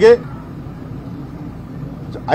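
A pause in a man's speech at an outdoor press conference, filled by a steady low rumble of outdoor background noise.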